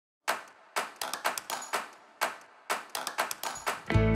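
A series of about fifteen sharp percussive hits in an uneven, quickening rhythm, each dying away quickly with a short ring.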